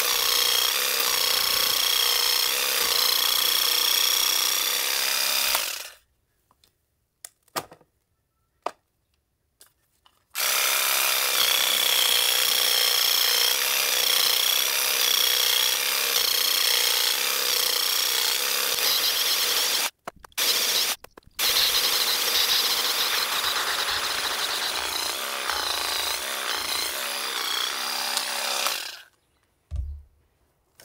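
MUSASHI WE-700 corded electric weeding vibrator running with its vibrating blade in the soil, a steady buzz with a high, wavering whine. It stops about six seconds in, starts again about four seconds later, drops out twice briefly later on, and stops just before the end.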